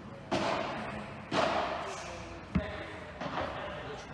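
A padel rally: four sharp hits of the ball off solid padel rackets, court and walls, roughly one a second, each ringing on briefly in a large hall.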